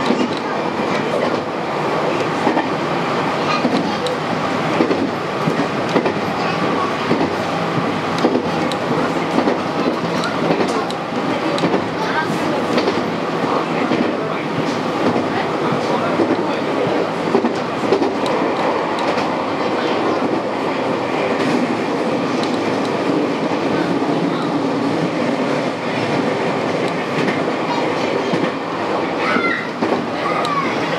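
JR West 223 series electric train running at speed on the line, heard from inside the driver's cab. Its running noise is steady, with scattered clicks from the wheels over the track.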